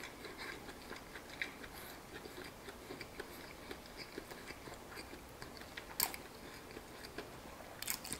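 A person chewing a mouthful of crispy fried chicken: soft, faint crunching clicks, with one sharper crunch about six seconds in.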